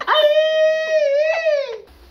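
A woman's voice holding one long high-pitched drawn-out cry for about a second and a half, falling in pitch as it ends.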